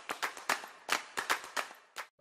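Intro sting of sharp, clap-like percussive hits, several a second and unevenly spaced, ending on a final hit.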